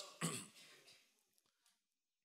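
A man briefly clears his throat near the start, over a Skype call link, then the sound drops to near silence.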